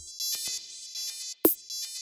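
Electronic dance music: a high buzzing synth line, with a sharp snare-like hit about one and a half seconds in.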